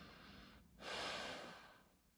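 A person breathing close to the microphone: a soft breath, then a louder one lasting about a second.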